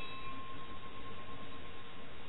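A single clear high tone, with fainter higher tones at its start, ringing steadily for nearly two seconds and stopping just before the end, over a steady background hiss.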